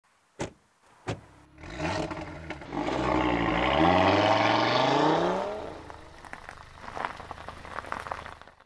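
Two sharp clicks, then a car engine builds up and accelerates hard, its pitch rising for a couple of seconds. It then fades away to a low hum.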